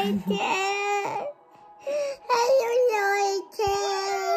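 A little girl's high-pitched voice close to the microphone, making long drawn-out, wavering sounds in three stretches with short breaks between them.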